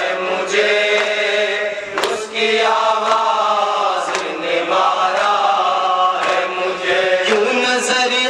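A noha, an Urdu Shia mourning elegy, chanted in a slow lamenting melody with long drawn-out notes.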